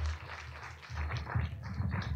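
Audience applauding: a short round of many hands clapping.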